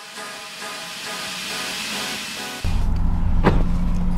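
A hissing wash of noise with faint held tones closing out the electronic music, then an abrupt cut about two and a half seconds in to car cabin noise: a steady low engine and road rumble with a held low hum, and a single click near the end.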